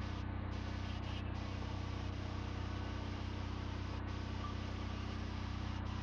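Steady, unchanging low hum of an idling car engine.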